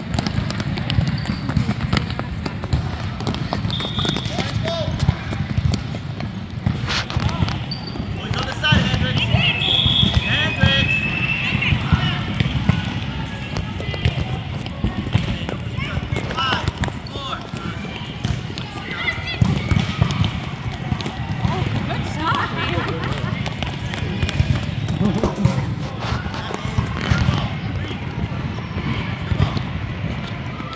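Indoor futsal play: a ball being kicked and bouncing on the court, with children's voices calling out, all echoing in a large hall over a steady low hum.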